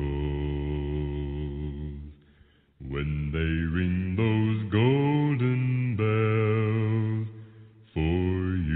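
A man singing long held notes without clear words, the later ones wavering with vibrato; the voice stops briefly about two seconds in and trails off near the end.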